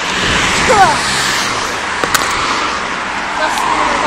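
Steady noise of road traffic and roadworks from a nearby road, with a brief sharp click about two seconds in.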